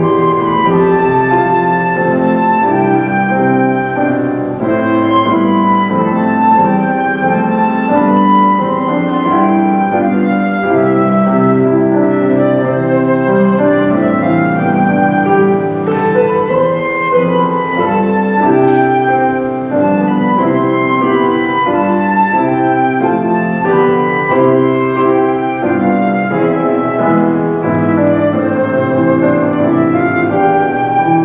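Flute and baby grand piano playing a melody together, the flute carrying the tune over the piano's accompaniment.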